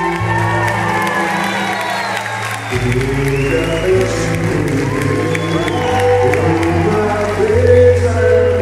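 A live band (bass, guitars, keyboard and percussion) playing a Brazilian popular song with singing, while the audience cheers and claps along.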